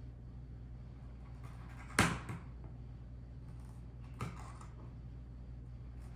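Fabric scissors cutting along the edge of a thick textured blanket fabric: one sharp snip about two seconds in and a fainter one just after four seconds, over a steady low hum.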